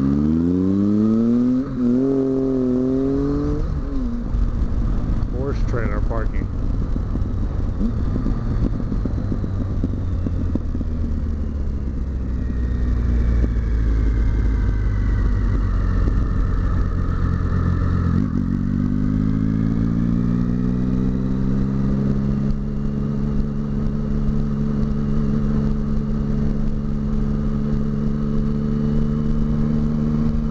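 Triumph motorcycle engine accelerating at the start, its pitch rising with a gear change about two seconds in, then running at a steady cruise under wind noise. About two-thirds of the way through the note drops, then rises again as the bike picks up speed, and holds steady near the end.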